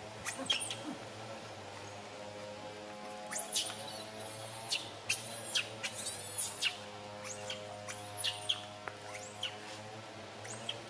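Baby macaque crying in shrill, high-pitched squeals that sweep up and down, coming in clusters that are densest from about three to seven seconds in, over a steady background hum.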